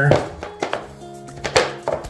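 A few sharp clicks and knocks as vinyl planks are pressed and locked together by hand, the loudest about one and a half seconds in, over quiet background music.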